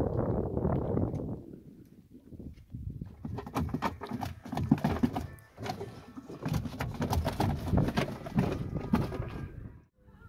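Sea water washing against a moving boat, then a run of irregular knocks and thumps against the wooden hull and gear of a small fishing boat.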